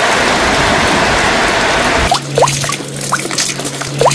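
Heavy rain falling in a steady downpour, cut off abruptly about halfway through. It is followed by water dripping and running, with a few short rising plinks over a low steady tone.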